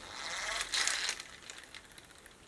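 Rustling and plastic handling noise from a Sky Dancers doll and its hand-held launcher being readied, fading after about a second and a half.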